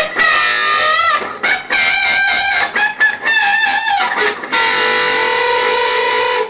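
Electric guitar playing a double-stop lick, the high E and B strings plucked together with the fingers and bent up in pitch, with wavering vibrato. Four sustained phrases, the last note held for about a second and a half.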